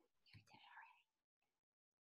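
Near silence, with a brief, faint voice about half a second in.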